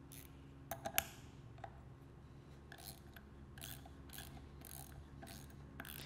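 Faint clicks and ticks of a screwdriver working the new nylon nut onto the diaphragm post of an auto air valve. There are a few sharper clicks about a second in, then light ticks roughly every half second.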